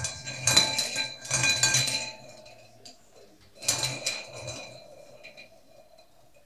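Small draw balls rattling and clinking against a glass bowl as a hand stirs them, with the glass ringing thinly. There is a burst of about two seconds, then a shorter one a little after halfway.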